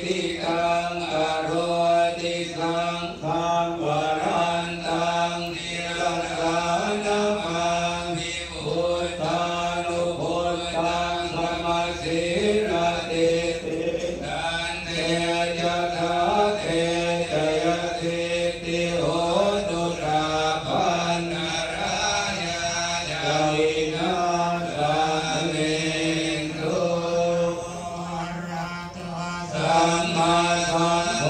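Thai Buddhist monks chanting a blessing in unison: a steady group chant held near one pitch, with small rises and falls.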